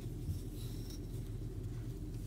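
Faint, soft rustling of yarn being drawn through stitches with a wooden crochet hook, over a steady low hum.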